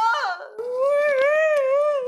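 A woman's exaggerated comic wailing cry. A sobbing burst breaks off about half a second in, then she holds one long wail that wavers up and down in pitch.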